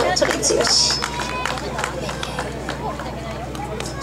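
People talking outdoors between songs, with scattered sharp knocks and clicks over a steady low hum; a held keyboard note stops right at the start.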